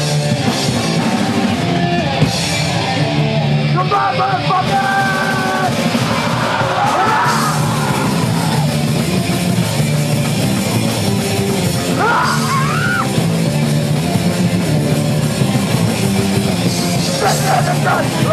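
Live punk rock band playing loud and steady: distorted electric guitar, bass and drums, with yelled vocals coming in at times.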